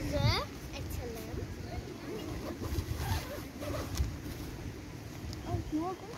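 Wind buffeting the microphone in a low, uneven rumble, with a high child's voice gliding up at the start and a few soft words later on.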